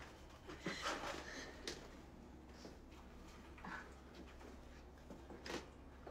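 Faint paper handling noises as a small folded playing card is pulled out and unfolded by hand, with a short sharp click a little before the end.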